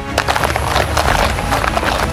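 Quick, irregular footfalls of several people running across grass, over background music.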